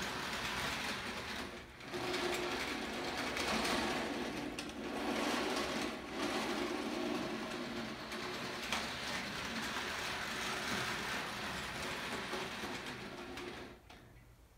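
Toy train running around a plastic track: a steady mechanical whirring and rattle with a brief dip about two seconds in, which stops abruptly at the end.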